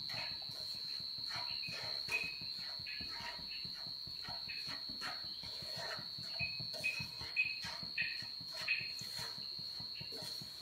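A wooden spatula stirs a dry, powdery roasted-gram ladoo mixture around a non-stick pan, with soft scraping and tapping. A faint, steady high whine runs underneath, and short high chirps come several times in the second half.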